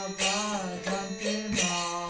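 Devotional kirtan: a singing voice over a steady harmonium drone, with hand cymbals striking a regular beat about every two-thirds of a second.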